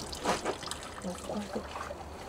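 Clothes being washed by hand in water: wet fabric scrubbed and worked, with water splashing and trickling.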